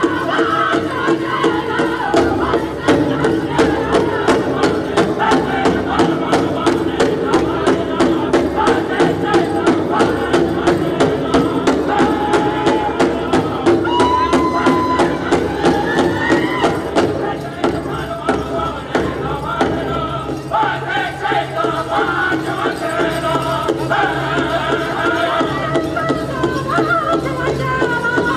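Powwow drum group singing a fast dance song: high voices chanting together over a fast, steady beat on the big drum.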